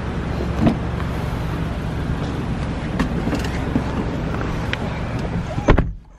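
A car idling with a steady low rumble while its rear door is opened, a latch click about half a second in. Near the end the door shuts with a heavy thump.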